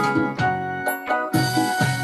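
Keyboard playing sustained chords over a moving bass line, with new chords struck about every second: the instrumental introduction to a choir song.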